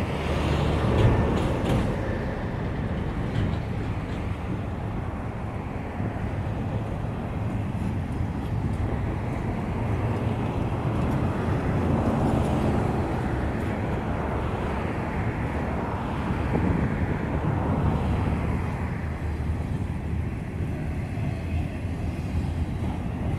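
Double-stack intermodal freight train rolling past at low speed, just getting under way after a stop: a steady rumble of well-car wheels on the rails.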